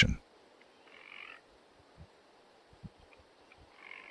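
Two short, faint animal calls, about a second in and again near the end, over a quiet background with a few soft low thumps.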